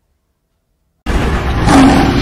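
Silence for about a second, then a sudden loud sound effect with a deep rumble cuts in: the opening of a news channel's animated logo sting.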